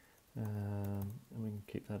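A few computer-keyboard keystrokes as a number is typed into a settings box, under a man's long held "um" and the start of his next word.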